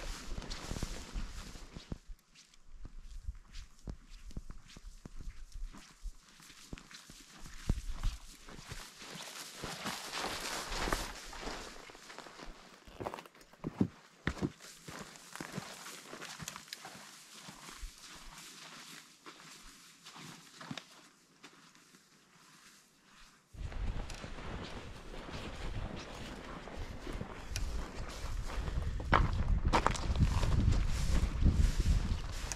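Footsteps of a hiker walking through long grass and over stones, a run of irregular rustles and knocks. About three-quarters of the way in this gives way to wind buffeting the microphone, a low rumble that grows louder toward the end.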